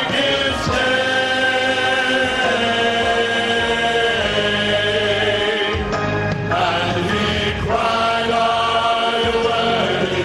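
A men's vocal ensemble singing a gospel song in harmony, holding long chords, with new phrases starting about six and eight seconds in.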